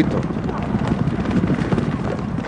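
Hoofbeats of a field of racehorses galloping together, a dense, rapid, overlapping patter of hooves on the track.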